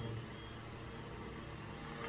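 Steady low background hum and hiss, with no distinct sound event.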